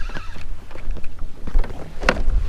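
Wind rumbling on the microphone, with a few light clicks and knocks.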